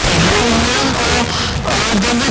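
FM car radio being tuned between frequencies for a distant station: loud static hiss with a weak station's talk coming through faintly underneath.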